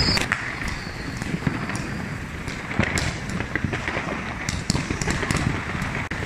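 Many fireworks and firecrackers going off at once: a continuous, irregular scatter of sharp bangs and crackles, some louder than others, over a constant din.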